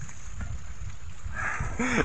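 Uneven low rumble of wind buffeting the phone's microphone outdoors, with a man's voice starting just before the end.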